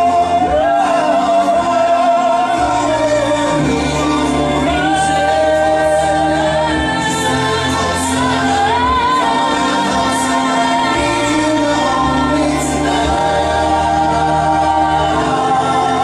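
Live pop ballad: a woman singing long held notes that waver in pitch, over band accompaniment.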